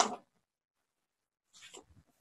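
The last syllable of a man's speech, then near silence from a gated microphone, broken near the end by a brief faint sound.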